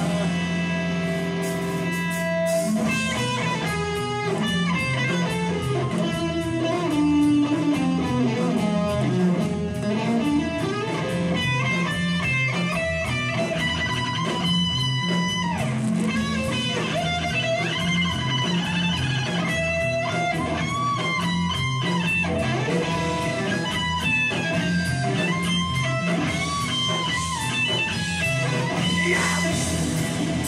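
Live rock band of electric guitars, bass guitar and drums playing. A chord is held for the first couple of seconds, then the full band comes in with a steady driving beat.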